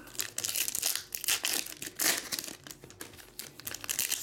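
Foil trading-card pack wrappers crinkling and tearing as 2019/20 Panini Hoops packs are ripped open by hand, in irregular bursts of crackle.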